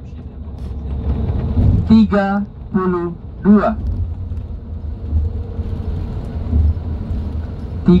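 Steady low rumble of road and engine noise inside a moving bus, with a voice speaking briefly about two seconds in.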